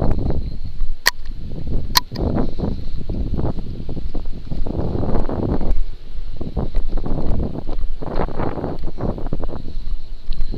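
Uneven rumbling handling and wind noise on a body-worn camera's microphone as the wearer moves about. Two sharp clicks come about one and two seconds in.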